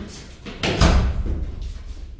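A heavy door slamming with a loud bang about two-thirds of a second in, dying away over about a second.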